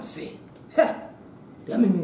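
A woman's voice in three short spoken bursts, with pauses between them.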